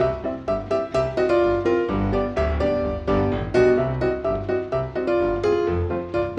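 Background music played on piano, a steady run of struck notes.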